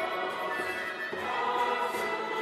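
A choir singing a Polish Christian worship song in sustained, held notes.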